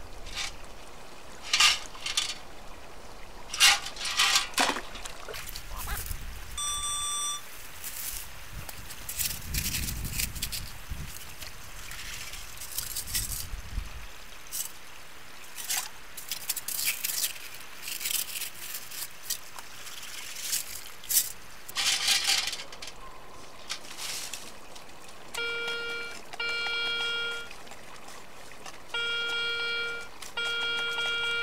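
Wet sand and creek gravel being scooped and sifted by hand in shallow water, with irregular scraping, rattling and splashing. From about 25 seconds in, a metal detector held over the dug hole sounds repeated steady electronic beeps in two pairs, signalling a metal target.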